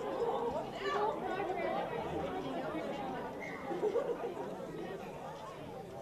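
Indistinct chatter of several people talking at once, overlapping voices with no single one standing out.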